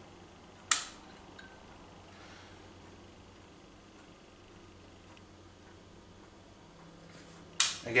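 Two sharp clicks of a desk lamp's rocker switch, about seven seconds apart, switching a PL tube lamp on and then off again.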